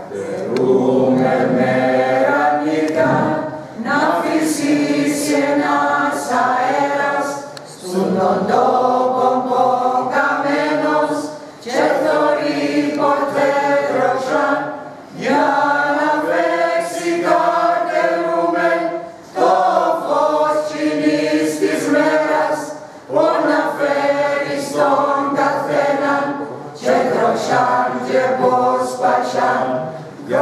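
A mixed group of men and women singing a song together, unaccompanied, in phrases of about three to four seconds with brief breaks between them.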